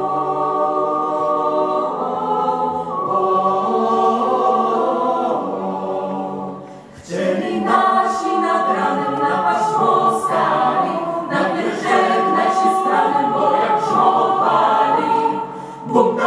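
Mixed choir of young men's and women's voices singing a Polish patriotic song in held chords. About seven seconds in the singing briefly drops away, then comes back in a busier, livelier passage.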